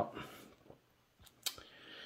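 A word trailing off, then a quiet pause with two short clicks about a second and a half in as a stainless steel Leatherman Core multitool is handled, and a breath drawn near the end.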